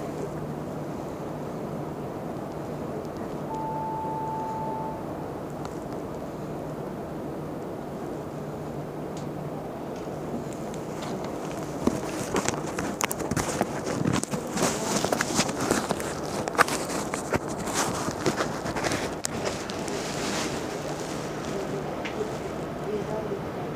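Interior of a Mercedes-Benz Citaro C2 articulated natural-gas (NGT) bus: a steady engine hum, with a single beep lasting about a second and a half about four seconds in. From about twelve seconds on, a run of sharp knocks and clatter sounds over the hum.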